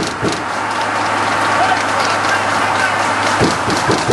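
Steady running noise of a car driving along the road: a constant low engine hum under even road and wind noise.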